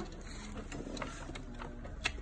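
Baby high chair's plastic-and-metal backrest recline mechanism clicking and rattling as the backrest is moved, a series of light clicks.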